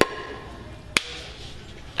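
A pink baseball bat striking a plastic hard hat: two sharp knocks about a second apart, the first leaving a short ringing tone.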